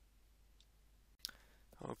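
Near silence with a single computer mouse click a little over a second in; speech begins at the very end.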